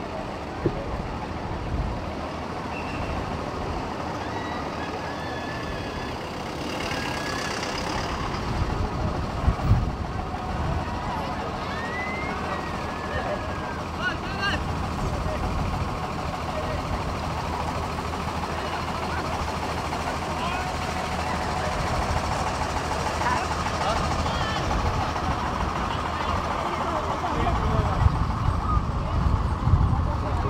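Outdoor street ambience: roadside crowd chatter mixed with the engines of a bus and trucks pulling parade floats as they come slowly closer, growing a little louder toward the end.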